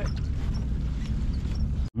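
Boat engine running steadily with a low hum and rumble. It cuts off abruptly just before the end.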